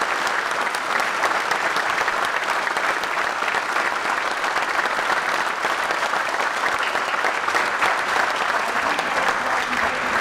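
An audience applauding, a dense, steady clapping that holds at an even level throughout.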